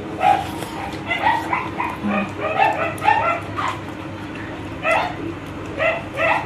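A small pet animal gives a rapid series of short, high-pitched cries, a dozen or so in quick succession. After a pause, two more come near the end.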